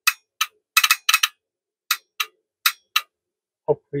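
Open-frame relays in a homebuilt T/R switch clicking on and off repeatedly as their control wire is grounded, about a dozen sharp clicks at uneven intervals, some in quick pairs. The clicks show that the relays are pulling in and the 12-volt supply feeding them works.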